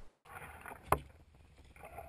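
Faint hiss with a single sharp knock about a second in.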